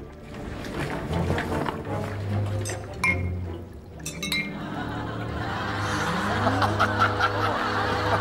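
Film-score music holding a low sustained note, with two ringing glass clinks about three and four seconds in; laughter near the end.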